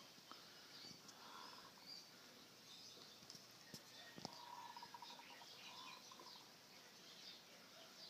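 Near silence with faint, scattered bird chirps in the background and one faint click about four seconds in.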